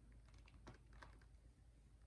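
Near silence with a low hum and a few faint, irregular soft clicks.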